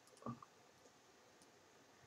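Near silence, with one faint computer-mouse click about a quarter of a second in.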